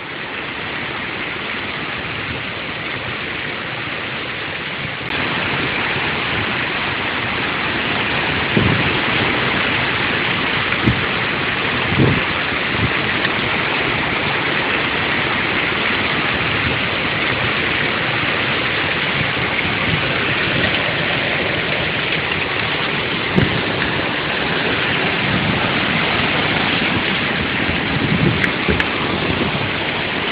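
Heavy rain pouring down steadily in a storm, getting louder about five seconds in, with a few short dull knocks here and there.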